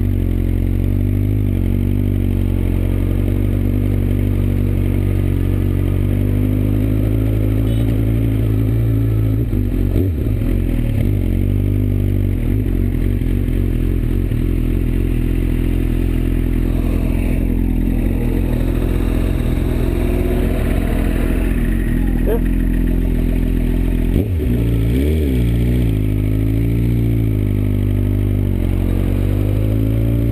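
Suzuki GSX-R1000 inline-four engine running at low revs on a rough gravel track, its pitch rising and falling with the throttle. Two sharp knocks from the bike hitting bumps, about ten seconds in and again about twenty-four seconds in.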